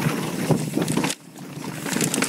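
Yeti SB4.5 mountain bike rolling over a rocky dirt trail: tyre noise with chain and frame rattle, mixed with wind on the microphone. The noise drops off suddenly about halfway through, then builds up again.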